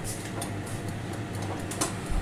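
A steady low mechanical hum, with faint irregular ticks and rustles over it.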